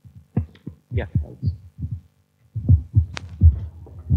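A series of soft, low thumps, with one sharp click about three seconds in.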